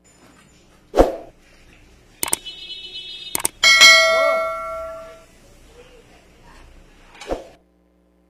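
Subscribe-button overlay sound effect: a few quick clicks, then a bright bell ding that rings out and fades over about a second and a half, the loudest sound here. A metal utensil knocks sharply against the aluminium wok once about a second in and again near the end.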